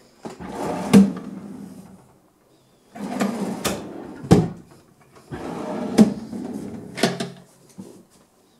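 Wooden drawers of a reproduction antique-style desk pedestal being slid open and shut three times. Each is a scraping slide of a second or two with a sharp knock, the last with two knocks.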